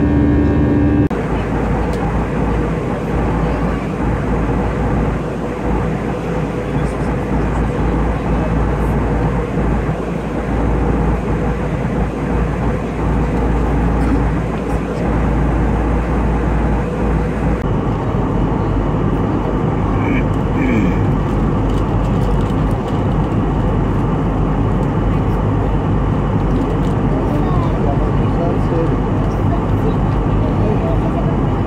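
Steady cabin noise of an Airbus A319-111 in flight: the CFM56 engines and airflow make a constant roar. The sound changes abruptly about a second in and again a little past halfway.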